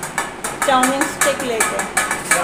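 Chopsticks being clicked and tapped together in quick, irregular light clicks.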